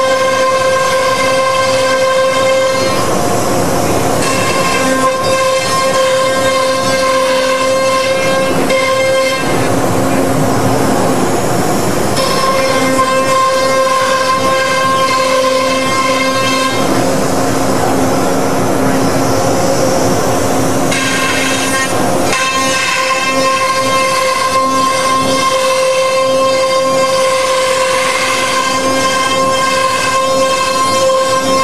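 CNC router running with a steady high-pitched spindle whine while it routes a sheet on its bed. Rushing cutting noise comes over the whine from about three to twelve seconds in and again from about seventeen to twenty-one seconds in.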